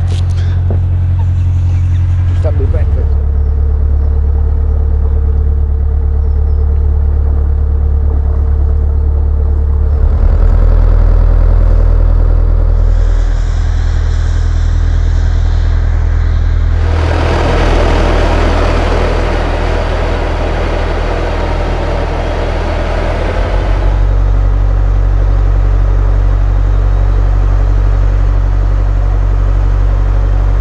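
Narrowboat's diesel engine running at cruising speed, a steady low throb heard from aboard the boat. Its sound shifts every several seconds, and a little past halfway a louder hissing stretch lasts several seconds.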